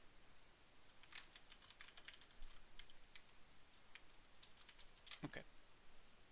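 Faint typing on a computer keyboard: scattered key clicks, thickest between about one and three seconds in.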